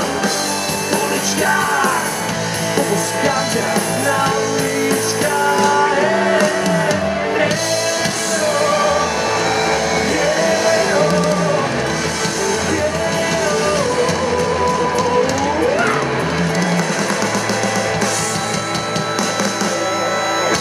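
Rock band playing live: electric guitars, bass guitar and drum kit, loud and steady, with a sung lead line over them.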